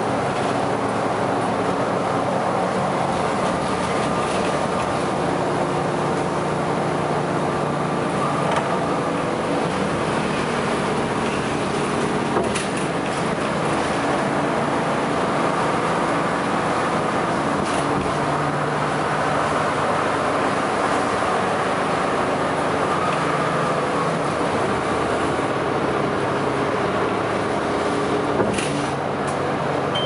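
Inside a Sunwin city bus on the move: a steady hum from the bus's drive system and the road, its pitch drifting up and down with speed, with a few short clicks or rattles from the cabin.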